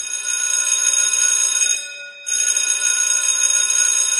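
Bell-like ringing sound effect, two rings of about two seconds each with a short break between them.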